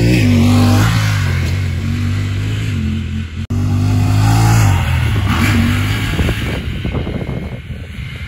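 Honda Talon R side-by-side's parallel-twin engine revving hard under acceleration, its pitch climbing and then dropping. It cuts off suddenly about three and a half seconds in, and a second run follows, revving up and falling away again.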